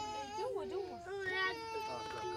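A young child crying in long, high wails that bend in pitch and are held for a second or more.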